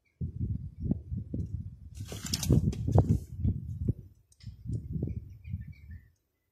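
Soft, irregular low thumps and rubbing, like handling noise close to the microphone, with a brief rustle about two seconds in.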